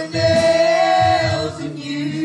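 Several voices singing a gospel song with musical accompaniment, holding a long note through the first second and a half.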